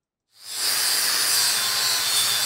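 Angle grinder with a coarse grit-40 Norton EasyTrim flap disc grinding a steel box section, a loud, steady hissing grind over the motor's hum. It comes in about a third of a second in and holds steady.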